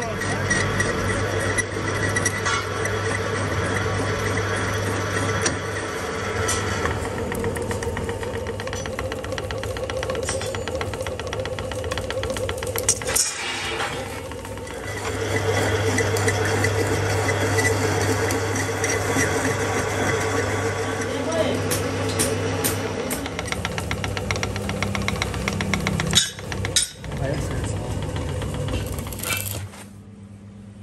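Metal lathe running with a steady motor hum, its chuck spinning while a cutting tool turns an iron gear blank, with ticks and clatter from the cut.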